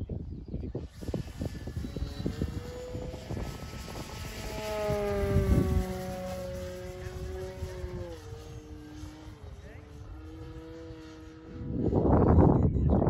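Radio-controlled model airplane flying overhead, its motor and propeller a pitched whine that grows louder about four to six seconds in, then drops in pitch about eight seconds in as the plane passes and moves away.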